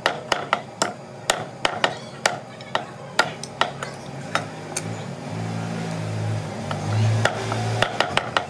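Meat cleaver chopping goat meat on a wooden log chopping block, sharp strokes about three to four a second, thinning out about halfway through. A low steady droning sound builds up in the second half and is loudest near the end.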